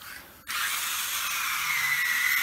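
Small electric motor of a battery-powered plastic toy bullet train switched on about half a second in and running steadily, a loud buzz with a whine that dips in pitch and comes back up.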